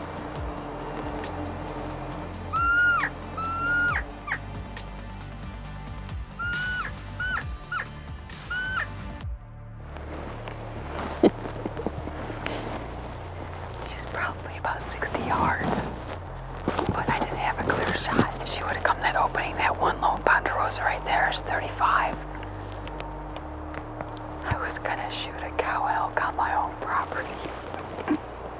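Cow elk mews: short, high-pitched calls that slide up and drop off, three a few seconds in and four more around seven to nine seconds, over background music. Whispered speech fills the second half.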